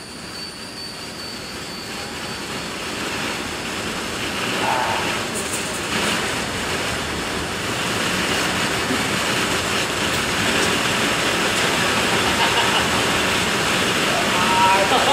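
Homemade vortex machine running: the motor-driven rotor above the table whirring with a rush of air, growing steadily louder.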